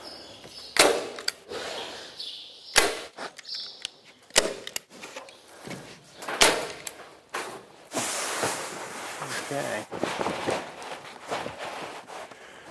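Hand staple gun firing staples through roof underlay membrane into a purlin: several sharp snaps about two seconds apart, then a few seconds of rustling.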